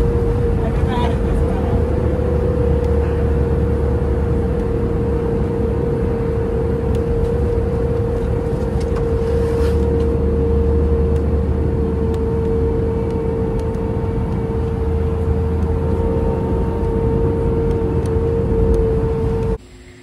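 Airliner cabin in flight: the steady drone of engines and rushing air, with a constant hum running through it. It cuts off suddenly just before the end.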